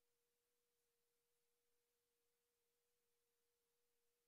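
Near silence: a gap in the broadcast audio, with only a very faint steady tone.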